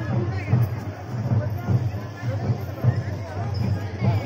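Music with a steady low drum beat, about two to three beats a second, over crowd chatter.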